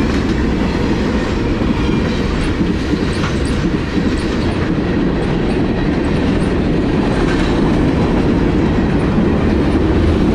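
Freight cars of a fast-moving Norfolk Southern freight train rolling past close by: a loud, steady rumble of wheels on rail, with faint short high squeaks now and then.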